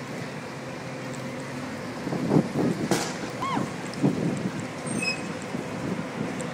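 Wind on the microphone and the low steady hum of a bus engine, heard from the open top deck of a moving sightseeing bus. Brief indistinct voices come in around the middle, with a click and a short falling chirp.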